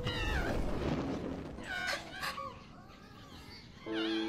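High, wavering cries from the anime's soundtrack, one at the start and another about one and a half seconds in, then a quieter stretch. A sustained music chord comes in at the very end.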